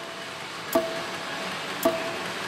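Saint Seiya pachislot machine's reels being stopped: two stop-button presses about a second apart, each a click with a short electronic beep, over faint machine music.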